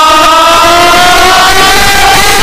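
Very loud noha chanting: one long sung note held unbroken, rising slightly in pitch, over the massed voices of a hall full of mourners.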